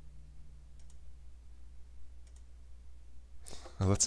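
Two faint computer mouse clicks about a second and a half apart, over a low steady hum; a man starts talking near the end.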